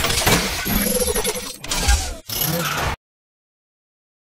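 Channel logo intro sting: a dense burst of sound effects with sharp clanks and a few short tones, cutting off abruptly about three seconds in.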